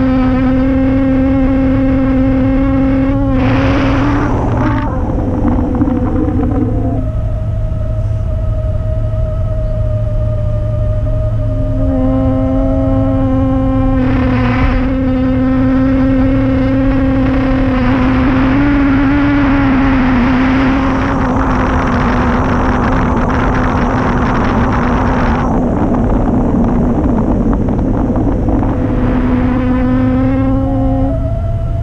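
Airflow rushing over a wing-mounted camera on a rigid-wing hang glider in flight, with a steady humming whistle that shifts pitch several times as airspeed changes. The rushing swells into louder gusts of hiss a few times, longest about two-thirds of the way through.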